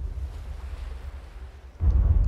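Deep low rumble from the anime's soundtrack that fades away, then a second rumble starts abruptly near the end.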